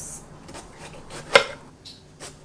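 Kitchen knife slicing the top off a bell pepper on a marble countertop: faint crunching as the blade goes through, then one sharp click a little over a second in as the blade meets the stone.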